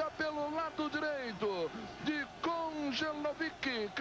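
Speech only: a television football commentator talking continuously, with no other sound standing out.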